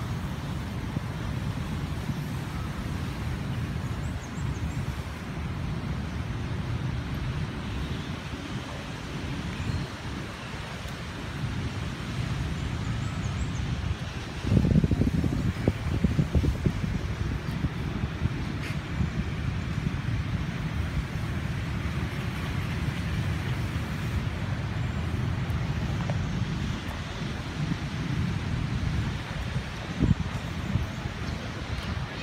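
Outdoor city ambience: a steady low rumble of distant road traffic mixed with wind buffeting the phone's microphone, with a louder surge for a couple of seconds midway.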